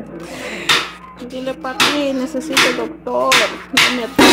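A high-pitched, wordless cooing voice at close range, broken by about five sharp smacks.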